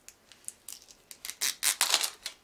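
Paper tearing and rustling as a toilet-paper-roll-style toy blind capsule is unwrapped by hand: quick crisp rips in clusters, loudest in the second half.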